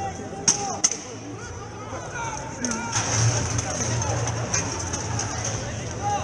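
Two sharp metal strikes about a third of a second apart, half a second in, from armoured full-contact medieval combat, over the voices of a crowd.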